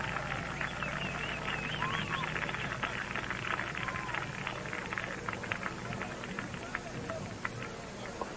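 Indistinct background voices and short high chirping glides over a steady low hum.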